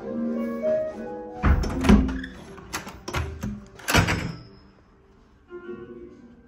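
A push-bar (panic bar) door clunking as its latch releases, then banging several times as it swings and shuts, the loudest knocks about two and four seconds in. Instrumental music plays underneath, with melodic notes clearest before the knocks.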